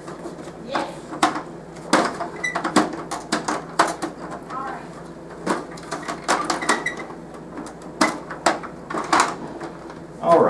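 Copy paper being set into a Kyocera copier's pulled-out paper drawer and pressed flat, with a string of irregular sharp clicks and knocks from the plastic tray and its paper guides.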